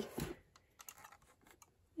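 Faint, irregular small clicks and taps of a 1:24 diecast model car being handled and turned in the hands, with a soft knock just after the start.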